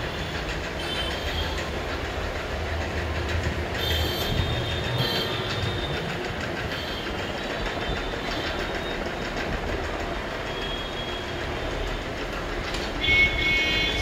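Steady low rumble of restaurant room noise, with a few short high-pitched clinks now and then.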